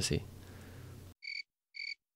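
Three short, high electronic beeps about half a second apart, an edited-in sound effect over digital silence, starting about a second in.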